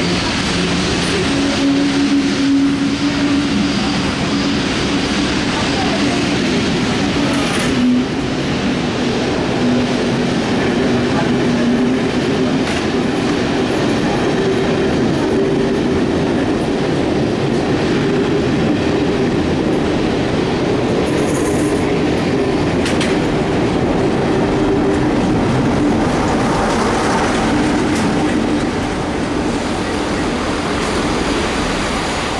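Passenger coaches rolling slowly past, their wheels clicking over the rail joints, with a diesel locomotive's engine running steadily under the train noise. The diesel on the rear of the train passes near the end.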